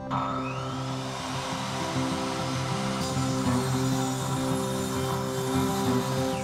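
Electric miter saw starting up abruptly with a rising whine, then cutting through a wooden board, with acoustic guitar background music underneath.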